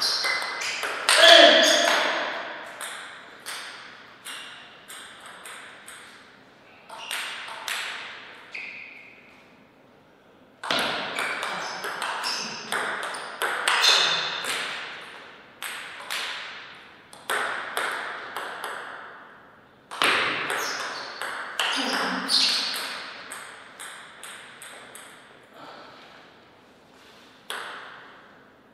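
Table tennis rallies: the ball clicks sharply off the paddles and the table in quick series, in several bursts with short pauses between points.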